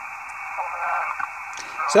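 Single-sideband receiver audio from an RTL-SDR tuned to the QO-100 satellite's narrowband transponder, played through a tablet speaker. It is a steady, narrow band of hiss with faint signals in it. The received tone wanders in pitch, which the operator puts down to the cheap Sky LNB drifting off frequency.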